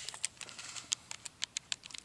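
Buttons pressed on a Texas Instruments TI-30X IIS scientific calculator to enter 30 ÷ 1: a quick, irregular run of light clicks.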